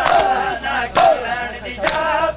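Chest-beating matam: a crowd of men slapping their bare chests together in a steady beat, about once a second, three loud slaps here, the loudest about a second in. Over the beat, men's voices chant a noha.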